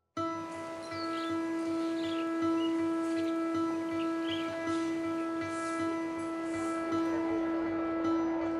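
Soundtrack music drone: one steady, sustained chord held without a break. Short high chirps, like birds, come and go faintly above it.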